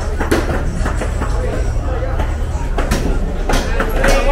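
Open-air street market: people talking at the stalls, with a few sharp knocks and clacks and a steady low rumble underneath.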